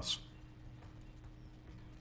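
Quiet room tone in a meeting chamber with a faint steady hum, heard through the meeting's microphone system during a pause between speakers.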